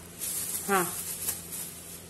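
Plastic cling film rustling as it is peeled off a bowl of risen dough.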